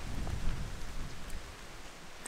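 Wind buffeting the microphone, a low rumble that slowly fades over the two seconds.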